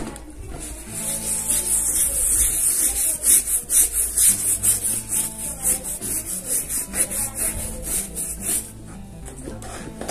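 Soft bristle brush scrubbing the wet leather of a handbag in quick, even back-and-forth strokes, about five a second, stopping near the end. Background music plays under it.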